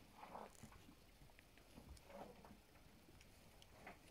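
Near silence, with a few faint soft noises about a third of a second in and again about two seconds in.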